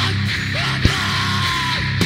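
Powerviolence band playing: heavily distorted guitars and bass in a dense, loud wall with drums and yelled vocals, with one hard hit a little under a second in.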